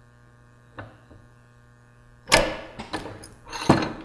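Hand arbor press pushing a small brushless motor's shaft out of its press-fit pinion gear: a faint click, then about two seconds in a loud metallic clunk as the part lets go, a few light clicks, and another sharp metal clack near the end.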